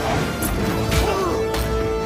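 Film action soundtrack: orchestral score with held notes, cut through by sharp impact sound effects, two distinct hits about half a second and a second in.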